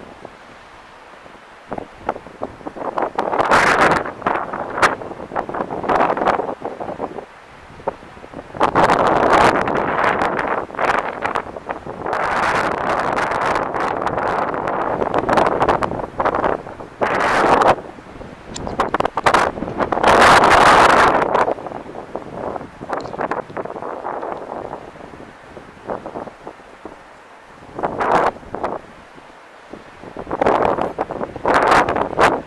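Wind buffeting the camera's microphone in uneven gusts, with scattered clicks.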